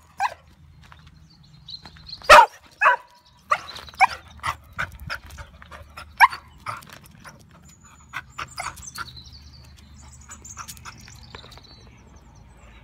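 English Springer Spaniel barking in a string of short, sharp barks, bunched close together in the first half and fewer and quieter after about eight seconds.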